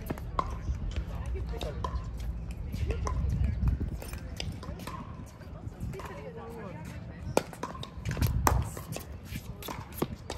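Pickleball rally: sharp pops of paddles striking the plastic ball, irregularly about every second, the loudest near the end. Wind rumbles on the microphone, swelling twice.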